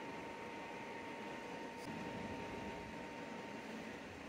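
Steady background hiss of room tone, with a faint steady hum that stops shortly before the end; the epoxy sculpting makes no sound that stands out.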